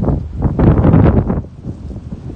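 Wind buffeting a smartphone's microphone in loud gusts, easing off about one and a half seconds in.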